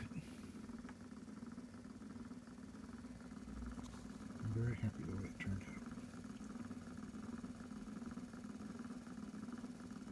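Victor VV-V three-spring phonograph motor running: a really quiet, steady whir from the spinning governor and worm-gear drive. It has been freshly greased and oiled and has a new spring, and runs quietly for a motor whose double-cut spindle and governor shafts tend to be noisy. A brief murmur of voice comes about halfway through.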